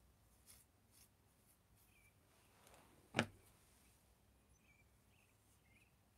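Near silence: room tone with faint rustling and small ticks, and one sharp click about three seconds in.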